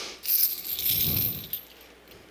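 A large link chain being lifted, its links rattling and clinking for about a second and a half before it settles.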